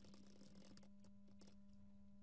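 Near silence: a steady low hum, with faint clicks of computer keyboard typing over the first second and a half.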